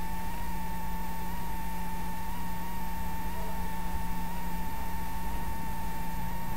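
A steady high-pitched electrical whine just under 1 kHz, wavering slightly, over a low hum and faint hiss.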